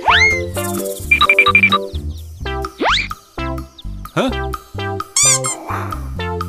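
Playful children's-style background music with cartoon sound effects over it: a rising boing at the start, a rising whistle glide about three seconds in, and a short warbling effect near the end.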